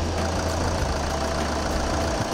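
Car engine idling steadily at about 1,000 rpm.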